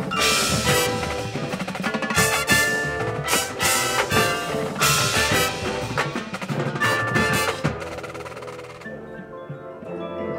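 Drum and bugle corps playing its show: a full ensemble of brass, drums and front-ensemble marimbas and other mallet percussion, loud with sharp accented hits, thinning to a softer, quieter passage near the end.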